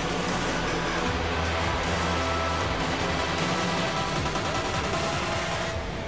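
Music, steady and then fading out near the end.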